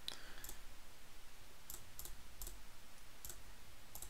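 Computer mouse clicks, about six single clicks at irregular intervals.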